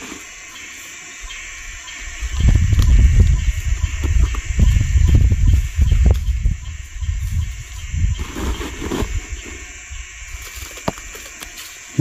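Bundles of slender fresh shoot stalks being handled and packed into a woven plastic sack: irregular rustling and dull knocks, busiest from about two seconds in until about nine seconds, with a few sharp snaps.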